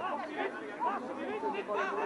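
Several voices calling and chattering on and around a football pitch, overlapping and quieter than close speech: players shouting to each other and a few spectators at the touchline.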